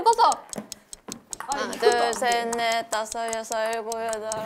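Ping-pong ball bouncing steadily on a table-tennis paddle, a run of light, even taps about four or five a second. From about a second and a half in, a melody of held notes sounds over the taps.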